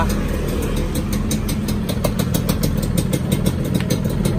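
Suzuki Xipo's two-stroke single-cylinder engine idling steadily, with a fast, even train of sharp exhaust pulses. The engine is newly rebuilt and still being run in.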